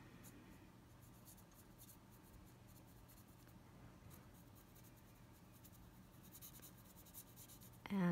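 Faint, soft scratching of a paintbrush stroking thin acrylic paint onto a polymer-clay broom handle and dabbing at the palette. The strokes are scattered and most frequent near the start and near the end, over a low steady hum.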